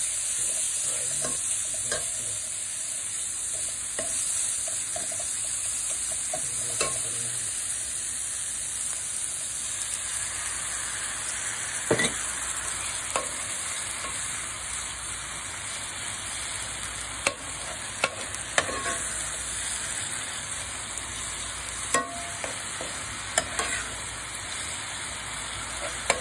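Onion-tomato masala frying and sizzling in oil in a non-stick pan, stirred with a metal spoon. From about ten seconds in the sizzle changes as water has gone in and the masala is a thin gravy, and several sharp clicks of the spoon knocking the pan stand out in the second half.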